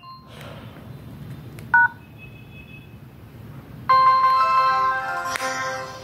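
Samsung SGH-T219 flip phone's speaker: a short two-note key beep about two seconds in, then a louder electronic chime of several steady tones at about four seconds, held for about a second and a half before fading.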